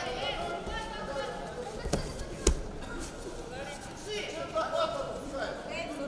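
A judoka thrown onto the tatami: one sharp thud of a body hitting the mat about two and a half seconds in, with a smaller knock just before it, over voices chattering in the hall.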